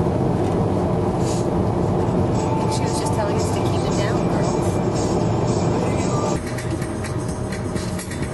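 Road and engine noise inside a moving car's cabin, with the car radio playing music and voices. The sound drops a little about six seconds in.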